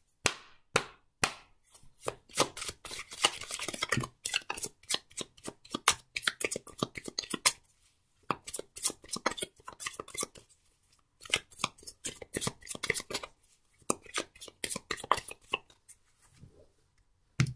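A deck of tarot cards being shuffled by hand: fast, irregular card-on-card slaps and clicks in two long runs, with a brief pause about halfway through.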